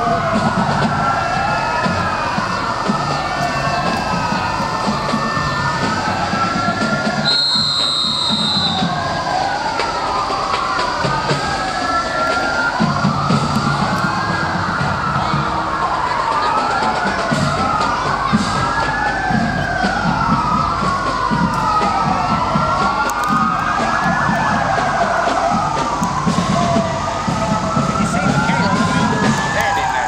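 Several sirens wailing at once and out of step with each other, each one rising and falling slowly in pitch, over a low engine rumble.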